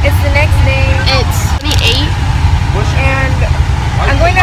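Steady low rumble of a bus heard from inside the cabin, with voices talking over it.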